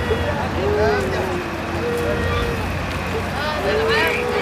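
Distressed human voices crying and wailing in long rising-and-falling cries, over a steady low rumble of vehicles.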